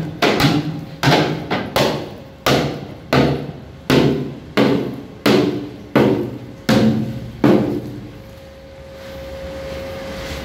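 A hammer striking steel plate about one and a half times a second, each blow ringing out and dying away, until the blows stop about eight seconds in. A steady machine hum with a faint whine comes up near the end.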